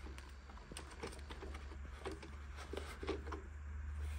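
Faint rubbing and small plastic clicks as a hand wipes and handles the inside of the main brush compartment of a Roborock S7 robot vacuum. A steady low hum runs underneath.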